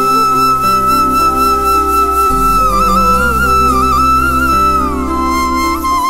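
Background music: a flute holds long high notes with small ornaments over sustained low accompanying notes, the melody stepping down near the end.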